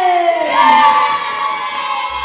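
A group of children cheering and shouting together, many high voices at once, loudest in the first second.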